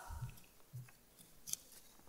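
Faint room sound with a couple of soft low thumps in the first second and a few small clicks about a second and a half in.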